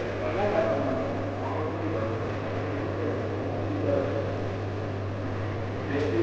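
Indistinct conversation among several men, with a steady low hum underneath.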